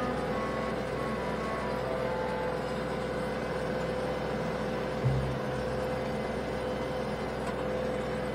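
A small farm tractor's engine running steadily, with background music laid over it. A brief low swell comes about five seconds in.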